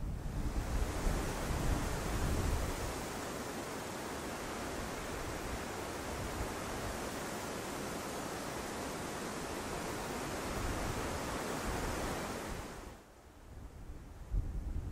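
Wind rushing steadily through trees and heath, with low buffeting of wind on the microphone; it swells in just after the start and dies away about a second before the end.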